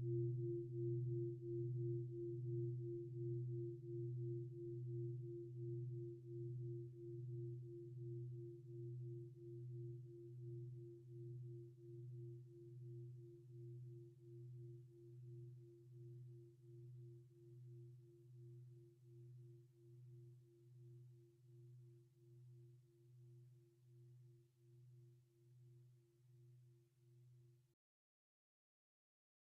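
Meditation gong ringing out after a strike, a low hum with a slow wavering pulse of about one beat a second, fading steadily and cut off abruptly just before the end. It is the reminder signal sounded during zazen, left to die away.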